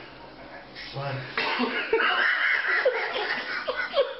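People laughing and exclaiming, getting much louder about a second and a half in.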